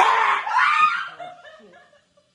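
A person laughing, starting suddenly and loudly and trailing off within about a second and a half.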